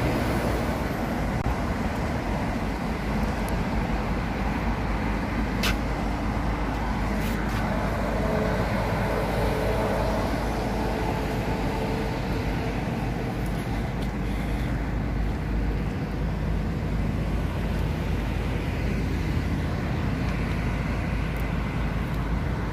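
Steady rumble of road traffic in the open air, with a single sharp click about six seconds in.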